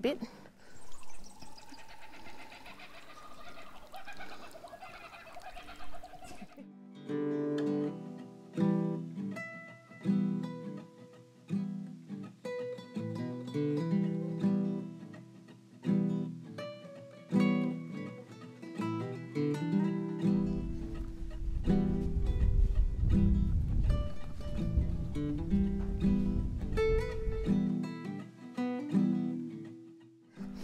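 Background music of plucked guitar notes, starting about six seconds in, with a deep bass joining for several seconds in the second half.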